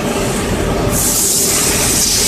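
SPU 20 CNC lathe running, its spindle turning at 300 rpm with a steady mechanical drone. About a second in, a loud spraying hiss starts suddenly and carries on.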